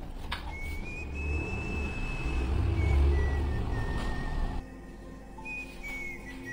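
A whistled melody: a few long, thin, high notes, held and then stepping down in pitch, over a low rumble that cuts off about three-quarters of the way through.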